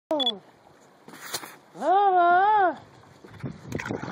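A man's wordless drawn-out vocal exclamation: one held 'ohh' that rises, holds and falls, after a short falling call at the very start. A brief scrape about a second in and a few light knocks of handling near the end.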